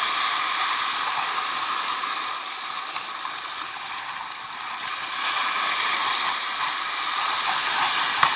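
Sea surf washing and foaming over shoreline rocks: a steady hiss of moving water that eases a little in the middle and swells again.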